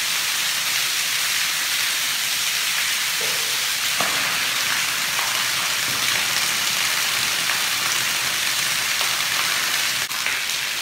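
Backed-up sewage gushing out of an opened overhead cast iron drain pipe and splashing down in a steady, rain-like rush: the contents of a main sewer line blocked by a clog, now pouring out.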